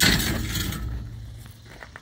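Heavy steel dumpster door being pulled open: a loud metal clatter at the start, then scraping and rumble that fade over about a second and a half.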